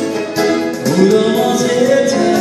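A small live band playing a Christian worship song on violin, acoustic guitar, electric keyboard and electric bass guitar. About halfway through, one note slides upward in pitch.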